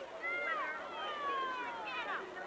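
High-pitched voices calling out from the sideline: two short arching calls, then one long drawn-out cry that falls slowly in pitch.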